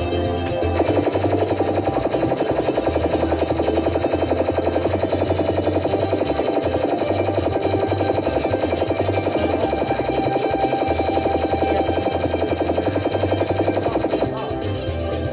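Crazy Fruits fruit machine playing its electronic feature tune with rapid, evenly repeated beeps as the Streak win counter climbs. It starts about a second in and stops at the end.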